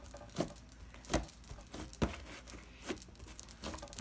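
Fluffy slime being kneaded and squeezed by hand, giving quiet, irregular sticky pops and squelches, about one or two a second.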